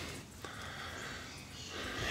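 Faint steady background noise with one soft click about half a second in.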